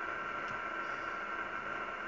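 Kenwood R-2000 shortwave receiver tuned to the 7 MHz band, its speaker giving a steady static hiss with a faint steady tone in it. The digital signals being decoded are so weak that they are lost in the noise to the ear; only the computer picks them out.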